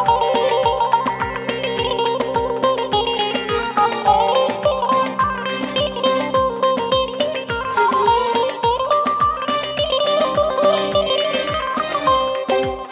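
Amplified live dance music: a fast, ornamented melody on a plucked string instrument over a sustained low drone, with a steady drum beat of about three strokes a second.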